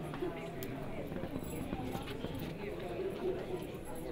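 Indistinct talking among several people in a hall, with a few light knocks scattered through it.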